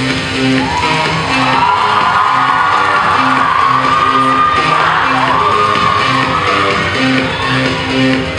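Loud music for a stage dance routine: a steady, repeating bass pattern with a high, wavering line sliding over it through the first half.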